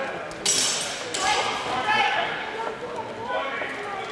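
Two clashes of steel longsword blades, about half a second and a second in, each a sharp hit that rings briefly in a large hall; voices call out after them.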